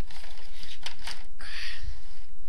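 Cardboard toy box being opened and handled, its packaging rustling and crinkling in short scrapes, with a louder scrape near the end.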